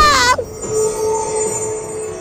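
A short, high-pitched scream, "Aaaa", in the first half-second, followed by background music with held notes.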